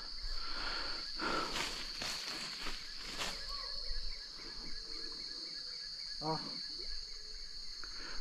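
A steady, high-pitched chorus of insects chirring, with a few faint rustles in the first half and a brief faint distant voice about six seconds in.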